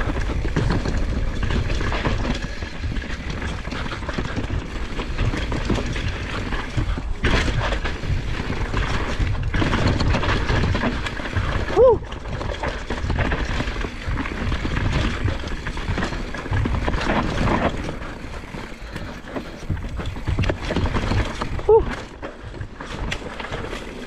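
Mountain bike ridden fast down a rooty dirt singletrack: tyres rolling over dirt and roots and the bike rattling over bumps, with wind rushing over the camera microphone. A steady rumble broken by frequent knocks, with a couple of louder hits about halfway and near the end.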